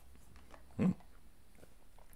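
Faint room tone broken once, just under a second in, by a single short voiced sound, a brief grunt- or whimper-like noise, with a few faint light clicks around it.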